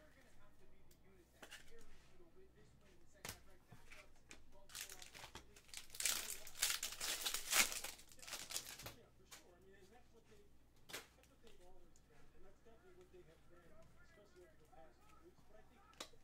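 Foil wrapper of a Panini Prizm football card pack being torn open and crinkled, loudest in a stretch of about four seconds starting around five seconds in. Scattered light clicks of cards and a plastic toploader being handled come before and after it.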